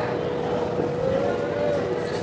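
Steady motor drone holding a constant hum, under the voices of a busy market crowd.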